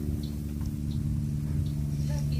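A steady low mechanical hum of a running machine, even in pitch and level.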